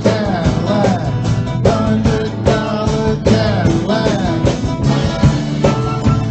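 A man singing into a microphone to his own strummed acoustic guitar, live. The voice comes in phrases over a steady strumming rhythm.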